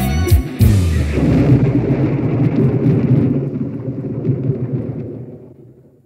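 A live band ending a song: drum and cymbal hits, then a dense rumbling wash of sound that fades out over about five seconds.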